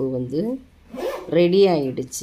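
A woman's voice speaking in two short phrases, with a brief noise between them about a second in.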